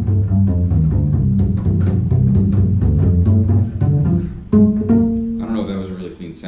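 Upright double bass played pizzicato: a fast run of plucked low notes, each right-hand strike aimed at a clean attack. The last couple of notes ring longer before the playing stops shortly before the end.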